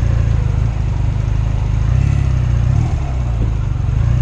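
Honda Rebel motorcycle engine running at low speed, its low note steady, with a brief rise in revs about two seconds in that drops back just before three seconds.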